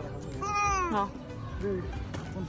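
A baby's high-pitched vocal squeal: one call about half a second long, starting near half a second in, that rises and then falls in pitch.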